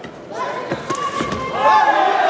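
Three or four quick thuds of kickboxing blows landing, a fifth of a second or so apart, over shouting voices.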